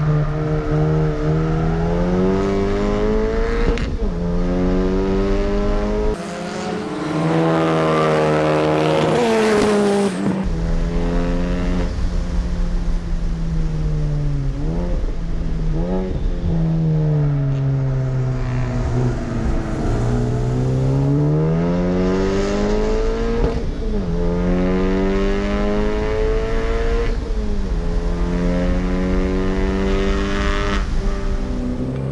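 Honda Civic Type R's turbocharged 2.0-litre four-cylinder heard onboard at full throttle around a track, the revs climbing through the gears and dropping under braking several times. A stretch of loud wind rush comes about six seconds in.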